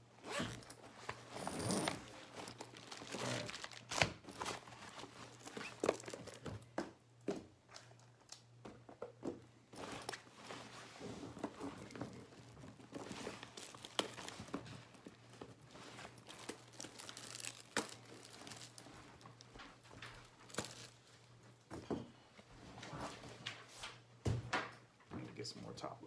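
Crinkling and rustling of handled plastic or paper, with many scattered clicks and small knocks, over a steady low hum.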